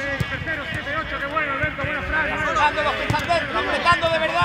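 Men shouting 'dale, dale' in encouragement during a football training drill, several voices overlapping, with short thuds of footballs being kicked.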